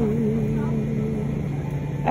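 Music with a long held sung note that fades out a little past the middle, over a steady low hum.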